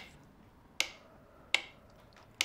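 Metronome ticking at a slow, steady beat: two sharp clicks about three quarters of a second apart, each with a short ringing tail. It is the rhythm set for a hypnotic induction.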